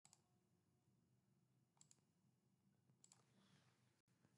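Near silence, broken by three very faint double clicks, one at the very start, one just under two seconds in and one about three seconds in.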